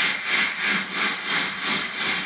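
Fog generator jetting fog: a steady hiss that swells and fades about three times a second.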